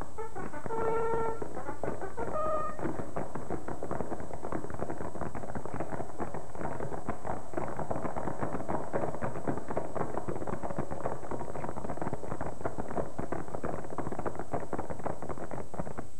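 Film soundtrack music led by brass: a few held brass notes in the first three seconds, then a dense, rapid clatter of beats that runs on steadily.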